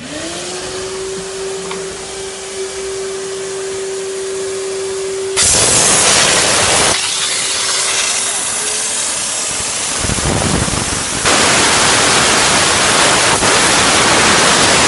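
Steam-and-vacuum car cleaner starting up: a motor spins up to a steady hum over a rushing noise. Loud jets of steam hiss from the nozzle about five seconds in and again from about eleven seconds in.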